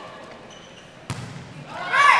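A volleyball struck once, about a second in: a single sharp smack with a short echo in an otherwise quiet arena.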